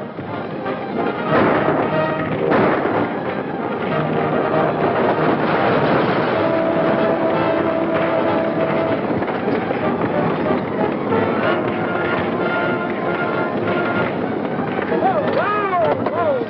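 Orchestral chase music on an old film soundtrack, with a couple of gunshots about one to three seconds in. A few short rising-and-falling calls come near the end.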